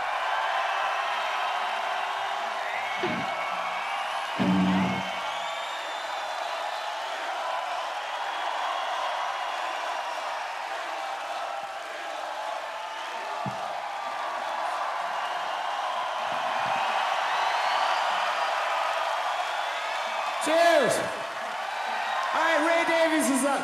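Large festival crowd cheering, whooping and whistling after a rock song, with a held guitar note ringing over the first few seconds. There is a short low thump about four seconds in, and a loud voice through the PA near the end.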